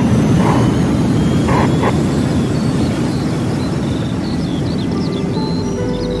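Station intro jingle: a steady rushing, whooshing noise under music, with short bird-like chirps coming in near the end as sustained musical tones begin.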